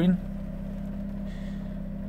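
Steady low hum of a Range Rover's 3.0-litre TDV6 diesel V6 idling, heard from inside the cabin.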